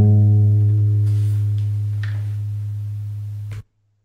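Acoustic guitar's final low note ringing out and slowly fading, then cut off suddenly a little before the end.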